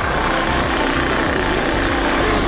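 Engine of a moving road vehicle running steadily, with wind noise over the microphone, and music faintly underneath.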